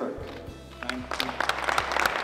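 Audience applause that breaks out about a second in and grows into dense clapping, over a low steady background of music.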